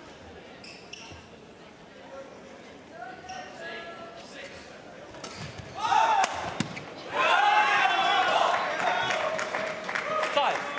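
Badminton rally: sharp racket strikes on the shuttlecock and thuds of players' feet on the court. From about six seconds in, a crowd of fans shouts and cheers loudly, swelling again a second later and carrying on as the point is won.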